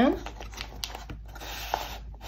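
Flattened newspaper strip rustling and scratching under the fingers as it is wound tightly around a small paper coil: a few light ticks, then a soft papery rubbing.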